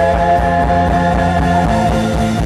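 Live rock band playing an instrumental passage, with electric guitars, bass guitar, drums and keyboard.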